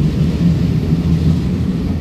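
Ten-car EMU900 electric multiple unit pulling out of the station, its cars rolling past with a steady low rumble that eases slightly near the end as the last car draws away.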